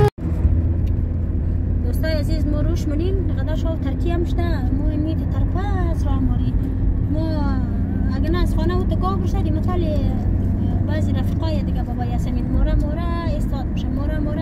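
Steady low drone of engine and road noise inside the cabin of a moving car.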